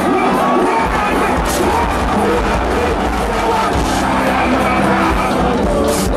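Live music played loud through a concert sound system, with a crowd audible beneath it.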